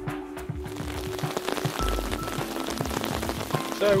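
Background music with mallet tones, joined under a second in by the steady hiss of rain falling on a river, which takes over as the music fades.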